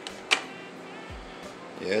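A single sharp click about a third of a second in, over the steady airflow of a small evaporative mini air cooler's fan.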